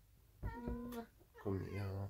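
A domestic cat meowing while being held and lifted, with a person's voice in between; two short calls, about half a second and a second and a half in.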